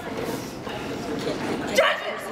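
Murmur of voices in a large hall, with one short, loud vocal cry near the end.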